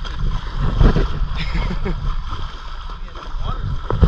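Wading in boots through river water against the current: water sloshing and splashing around the legs, loudest about a second in and again at the end, over a steady low rumble.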